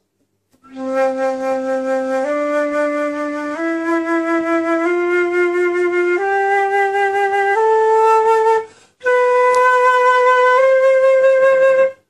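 Transverse flute playing a slow ascending C major scale in its first octave, from C up to the C above. Each note is held steadily for about a second and a half, with a short breath break before the last two notes.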